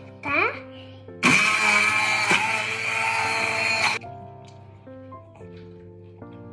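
Sonifer stick blender running for nearly three seconds, puréeing chopped fruit including banana in a tall beaker into a smoothie; it starts and cuts off abruptly. Background music plays throughout.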